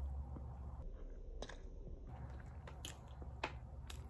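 Close-up biting and chewing of a crispy chicken sandwich, with a few small sharp crunches and mouth clicks scattered through the chewing.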